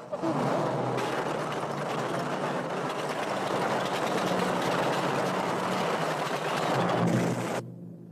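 A vehicle running with a dense mechanical clatter over a low steady hum, which cuts off sharply near the end.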